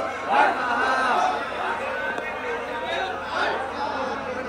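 Many men's voices overlapping at once, a steady crowd of speech with no single voice standing out.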